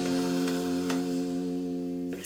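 Music: one acoustic guitar chord left ringing, held steady and fading slightly, with no singing over it.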